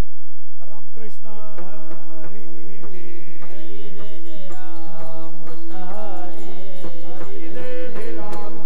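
Marathi devotional kirtan chanting: a lead male voice starts singing about half a second in, and a chorus of men's voices joins about two seconds later, over a steady drone and the fast ticking of small brass hand cymbals (taal).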